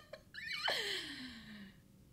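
A woman's breathy vocal gasp or exclamation that slides down in pitch over about a second and a half, preceded by a couple of short mouth clicks.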